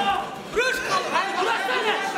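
Many voices shouting and talking over one another: spectators and cornermen at a cage fight.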